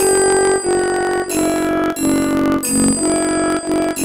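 Synthesized flute voice of a music-notation app playing a rāg Yaman melody, one clean note after another, about six notes, in a descending phrase.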